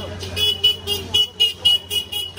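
A vehicle's electronic beeper sounding a rapid run of short, high-pitched beeps, about four a second.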